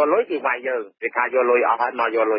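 Speech only: a voice reading a Khmer-language radio news report, with a narrow, radio-like sound.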